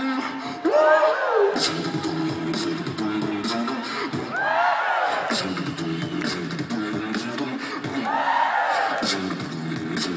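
Live beatboxing: a low bass line that steps up and down in pitch under sharp snare and hi-hat clicks, with rising-and-falling vocal swoops about a second in, around four and a half seconds and again near eight and a half seconds.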